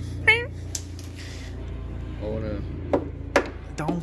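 A short vocal exclamation just after the start and a low murmured voice a little past the middle. Between them are scattered sharp clicks and taps, over a steady low hum.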